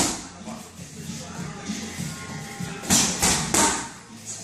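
A quick combination of three gloved strikes smacking into Muay Thai focus mitts, about a third of a second apart, near the end, over background music.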